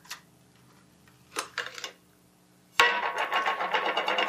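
Very stiff metallic thinking putty being pulled and pressed in its small metal tin. There are a couple of faint handling sounds, then about three seconds in a sudden loud, dense crackling rasp starts and keeps going.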